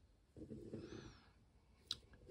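Near silence: faint handling noise as fingers twist a soft-plastic bait on a jig head, with a single sharp click just before the end.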